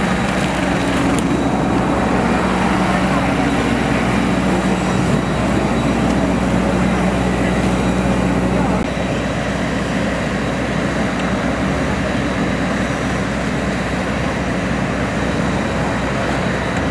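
Steady droning hum of aircraft and ground-vehicle engines on an airport apron, with low held tones under it, dropping slightly in level about nine seconds in.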